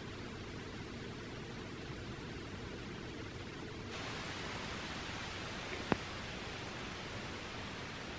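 Steady, even hiss of outdoor background noise with no distinct source. It turns brighter about four seconds in, and there is a single brief click near the six-second mark.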